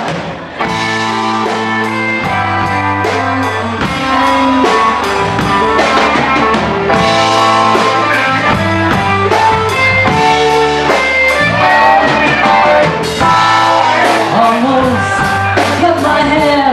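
Bluesy rock band music with electric guitars, drum kit and singing, starting about half a second in and growing louder about four seconds in.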